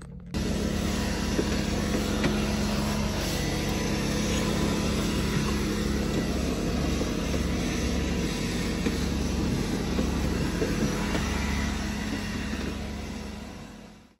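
Steady rumble and hiss of a running motor vehicle, with a constant low hum; it fades out near the end.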